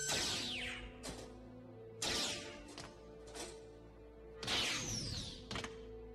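Film sound effects of a laser-sword fight: three loud swings, each a falling swish, at the start, about two seconds in and about four and a half seconds in, with sharp clashes between them, over background music.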